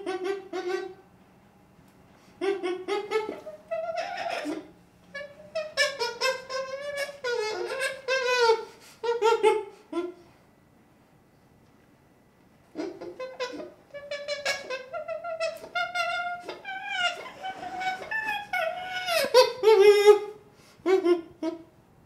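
A baby chimpanzee calling in runs of high, wavering cries whose pitch slides up and down. There are two short pauses, about a second in and about ten seconds in.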